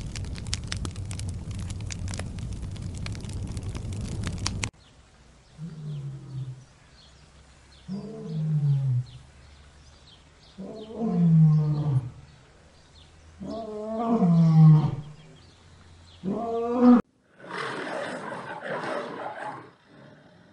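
Male lion roaring: a bout of five deep calls, each falling in pitch, a couple of seconds apart. They grow louder and longer through the bout, with the loudest about two-thirds of the way in, then end on a short last call. Before the roars there are a few seconds of crackly noise, and after them a burst of rough noise.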